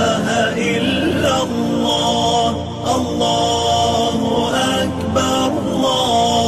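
Chanted vocal music in a TV channel's closing jingle: a voice holding long notes that slide from one pitch to the next.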